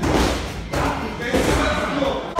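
Punches and kicks landing during light kickboxing sparring: several dull thuds of boxing gloves and shins hitting gloves and body, over background music.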